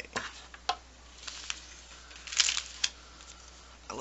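Clear plastic packet crinkling in the hands in a handful of short, separate rustles, the loudest a little past halfway.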